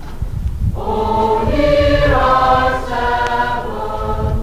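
A high school chorus singing a slow passage in sustained chords, played from a 1975 record. The voices come back in after a brief break about a second in, and swell towards the middle.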